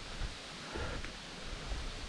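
Steady rustling of wind through the leaves of a woodland, with a few soft low thumps.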